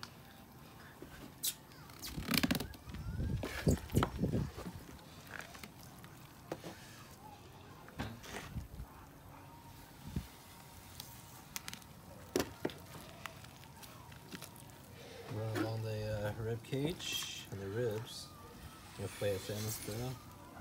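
Knife work and handling on a raw albacore tuna on a plastic cutting board: scattered clicks and scrapes, with a cluster of louder rough handling noise a few seconds in.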